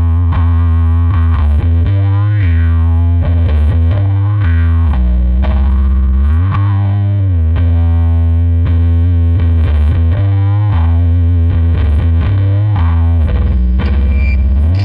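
Instrumental doom metal: heavily distorted electric guitar and bass playing a slow riff of long, held low notes, several of them sliding in pitch.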